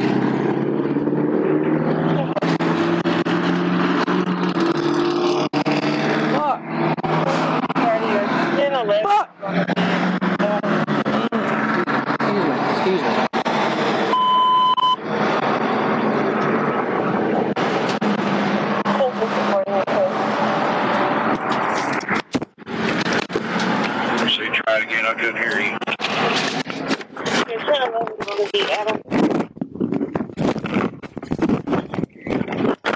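Indistinct, overlapping talk over steady background noise, with a short steady electronic beep about halfway through.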